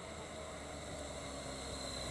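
Faint motorcycle engine running steadily as the bike approaches, growing slightly louder, over a steady hiss.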